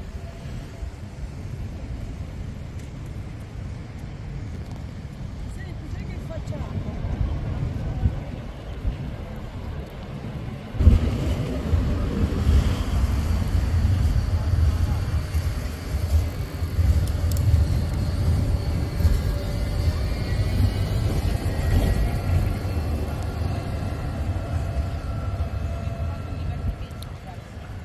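Low, steady city traffic rumble that jumps louder about eleven seconds in, with a tram approaching near the end.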